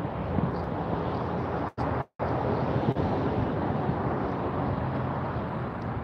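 Road traffic with wind on the microphone: a steady rush of vehicle noise and low rumble. The sound cuts out twice, briefly, a little under two seconds in.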